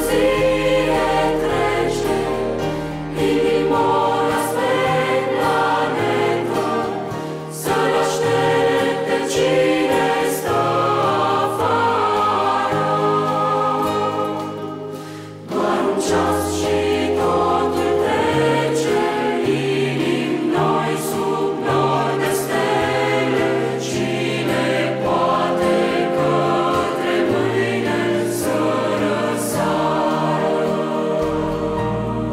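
Large mixed choir singing a slow sacred song, accompanied by digital piano and strings, with long held bass notes. The music eases off briefly about halfway through, then swells back in.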